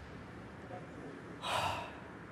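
A man's single sharp, audible breath, like a gasp, about one and a half seconds in, heard close up in a quiet room.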